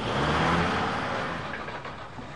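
A motor vehicle driving past: its engine and tyre noise swell up, peak about half a second in and fade away over the next second.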